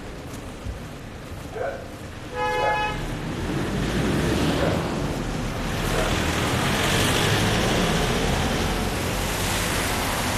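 Street traffic: a short vehicle horn toot about two and a half seconds in, then a louder, steady rush of passing traffic noise.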